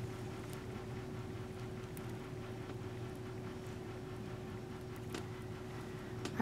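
Quiet room tone: a steady low hum with a faint steady tone over it, and a few faint, thin ticks.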